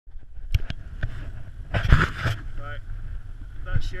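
Wind rumbling on an action camera's microphone, with a few sharp knocks in the first second and a loud rustling scrape about two seconds in from the camera being handled. A few spoken words come near the end.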